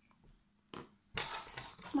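Handling noise of a yarn crochet piece and hook being moved: a brief click about three-quarters of a second in, then rustling for the last second.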